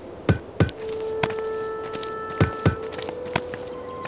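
A small cartoon ball bouncing, about six soft thuds in uneven pairs and singles, over gentle background music.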